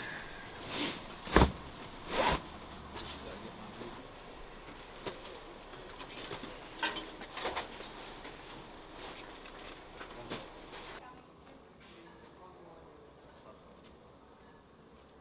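Heavy duffel bags being handled and loaded into a bus luggage hold: a few sudden thuds and knocks, the two loudest close together near the start, over rustling and a murmur of voices. About eleven seconds in the sound drops to a quieter background.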